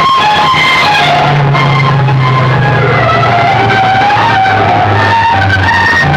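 Music played very loud through banks of horn loudspeakers on a DJ sound cart: a wavering, stepwise melody over a steady low bass drone, with no pauses.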